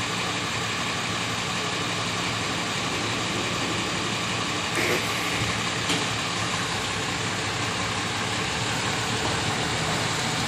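Steady engine idling under a constant hiss, with two short clicks about five and six seconds in.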